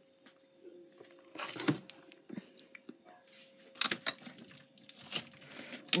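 Plastic-wrapped meat and a plastic tub being handled: a few short crinkles of plastic packaging and light knocks as the joints are set onto a fridge shelf, over a faint steady hum.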